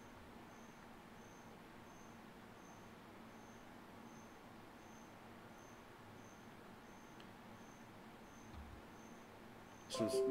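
Near silence: faint room tone, with a faint high-pitched chirp repeating about every 0.7 seconds.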